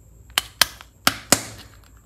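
Hands handling a hollow plastic toy ball capsule: four sharp plastic clicks in two quick pairs.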